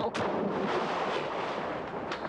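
A sudden heavy impact, followed by a rough, rushing noise that eases off slowly.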